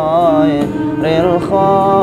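Male voice singing sholawat, an Islamic devotional song, in a wavering, ornamented melody over steady held backing tones, in two phrases with a short break about halfway.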